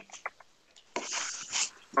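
Computer keyboard keys clicking as text is typed, with a short hissing noise of under a second about a second in.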